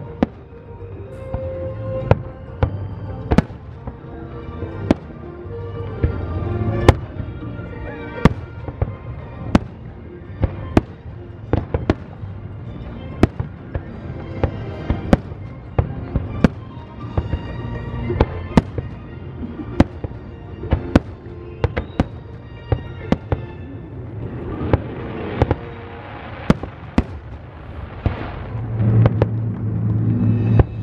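Aerial fireworks shells bursting in a steady run of sharp reports, about one or two a second, over the show's music; the bursts come thicker near the end.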